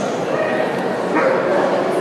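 A dog barks once, briefly, about a second in, over people talking in the background.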